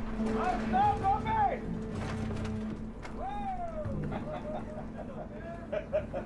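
A steady low machinery hum from a workboat on deck, with men's voices calling out over it several times.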